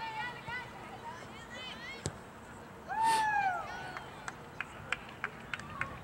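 High-pitched shouts from a soccer sideline, with one loud, long yell about three seconds in. A single sharp knock comes just before it, and near the end there is a quick run of about seven sharp claps.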